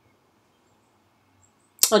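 Near silence with faint room tone. A sharp click comes near the end, just as a woman starts speaking again.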